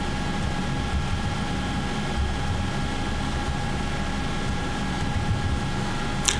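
Steady background noise: a low rumble and even hiss with a faint, constant high whine, unchanging throughout.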